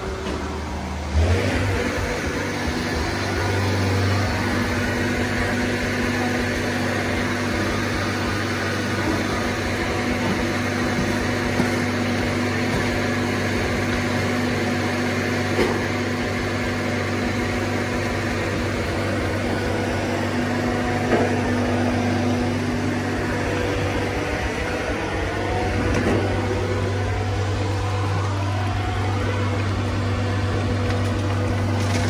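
A machine's engine running steadily, stepping up in level about a second in, with a few short knocks over it.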